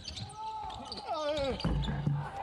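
Basketball bouncing on a hardwood court during live play, with thin gliding squeaks and a low thud near the end.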